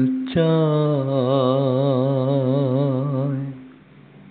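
A singer holds one long note with a wide, even vibrato for about three seconds over a steady low drone in a Bengali folk song, then the sound drops away near the end.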